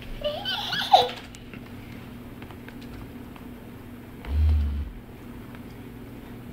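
A toddler gives a short squealing giggle about a second in. Near the end, a small handheld back massager buzzes briefly with a low hum for about half a second.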